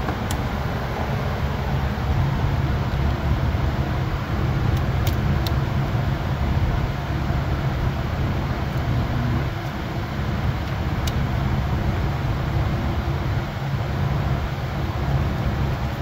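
A steady low mechanical hum runs throughout. A few faint plastic clicks come about five seconds in and again near eleven seconds, as a fuse is pressed into the under-hood fuse box and its clips seat.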